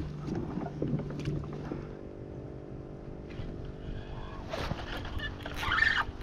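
A steady low mechanical hum with several pitches, with a few light clicks of fishing gear being handled on a kayak in the first couple of seconds.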